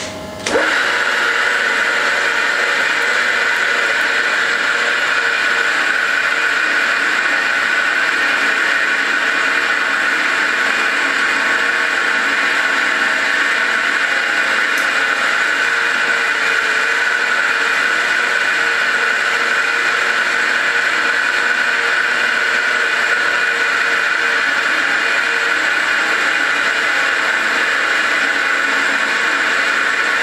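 A century-old electric roller grinder (cylinder refiner) switches on about half a second in and runs steadily and loudly while almond praliné paste is refined between its rollers. Its big motor drives small rollers and runs without straining.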